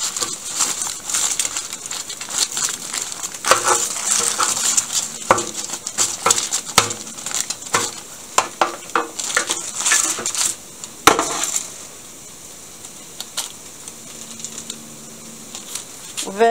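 Cubed potatoes being tipped into a parchment-lined foil baking pan and spread over chicken by hand: irregular clicks, scrapes and crinkling of paper and foil. The handling thins out and is quieter in the last few seconds.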